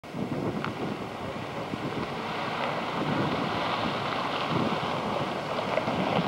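Wind buffeting a camcorder's microphone outdoors: an uneven, gusty rushing noise.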